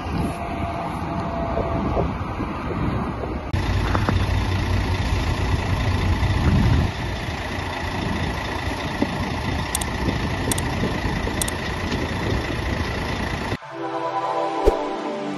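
Wind buffeting the microphone over outdoor background noise. After a cut about three and a half seconds in, a fire engine's engine runs steadily with a deep rumble and a faint steady whine.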